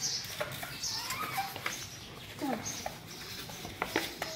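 Small plastic spoon scooping bird seed out of a metal tin into a plastic feeder dish: seed rustling and pattering, with light clicks of the spoon on the dish. A few short squeaky calls sound in between, one sliding down in pitch about two and a half seconds in.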